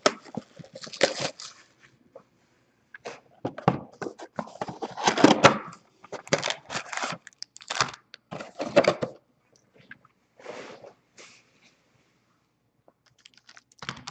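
Foil-wrapped trading card packs handled and set down on a desk: irregular rustling and light thunks as the stack of packs is taken out and squared up, with a short pause near the end.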